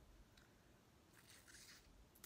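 Near silence, with faint crackles of a boiled crawfish's shell being picked apart by hand about half a second in and again in the second half.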